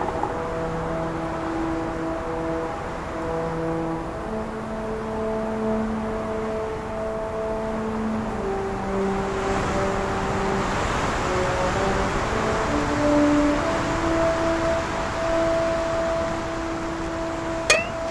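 Slow background music of long held synth-like notes, one or two at a time, stepping to a new pitch every second or two, over a steady hiss that swells in the middle. A sharp click comes near the end.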